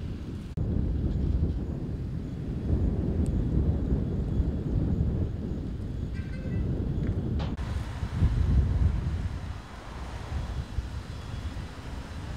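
Wind buffeting the microphone: a low rumble that rises and falls in gusts, with abrupt changes about half a second in and again about seven and a half seconds in, where the footage is cut.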